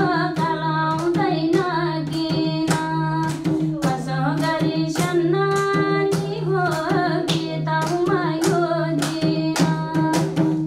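A woman singing a Nepali song with drum strokes and a sustained held tone under her voice.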